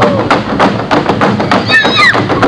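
Dancers' boots stamping on a stage in a quick, even rhythm, about six beats a second, as part of a Slovak men's folk dance.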